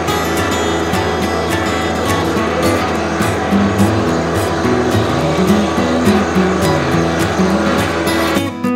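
John Deere 1025R compact tractor's three-cylinder diesel engine running steadily as it passes close while pulling a landscape rake, heard under background acoustic guitar music.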